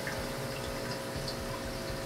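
Reef aquarium sump running: steady trickling, bubbling water with a faint steady hum under it.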